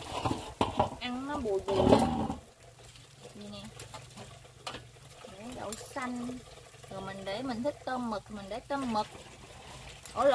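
Indistinct background voices talking in short bursts, not clear enough to make out words. A low steady hum sits underneath from about two and a half seconds in.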